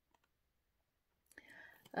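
Near silence, then a faint breath in the last moment before speech.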